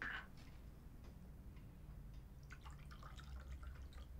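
A glass bottle and tumblers being handled to pour a drink: a brief clink right at the start, then a run of small clicks and trickling about two and a half seconds in as the drink begins to pour.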